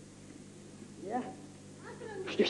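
A short voice call about a second in, its pitch bending up and down, then a brief rising call near the end.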